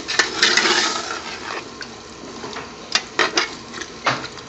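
A metal ladle stirring whole scotch bonnet peppers in vinegar in a large aluminium pot, clinking and scraping against the pot a few times near the start and again near the end. A hiss from the hot pot is heard in the first second or so.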